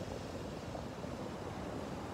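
Steady wash of small one-to-two-foot surf breaking along a sandy beach, an even rushing noise with a low rumble and no distinct crashes.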